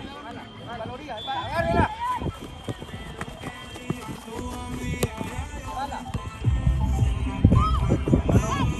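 Shouting and calling voices at a youth football match, from players and people along the touchline, over music playing in the background. A louder low rumble comes in for the last second and a half.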